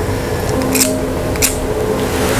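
A handheld cigarette lighter struck twice, two short sharp scrapes about a second apart, as a cigarette is lit.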